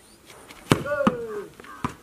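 A ball kicked on a dirt path: one sharp thud about two-thirds of a second in, then a couple of lighter knocks as it bounces away. A voice calls out just after the kick.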